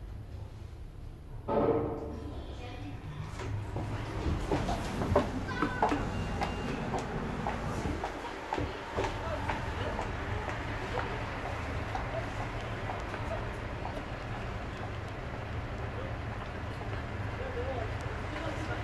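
A glass-walled passenger elevator at the street level, with a short announcement sound about a second and a half in. The doors open onto a street with clicks along the way, and a steady hum of traffic and passers-by follows.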